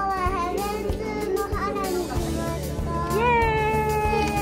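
A young child's voice making drawn-out, sing-song calls over background music: a falling call at the start, then a rising call near the end that is held long.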